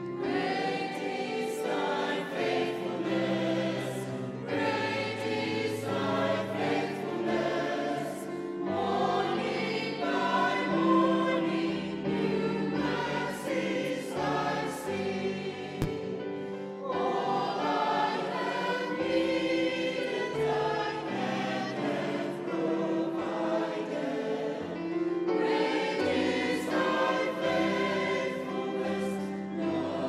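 Mixed choir of men's and women's voices singing together in phrases.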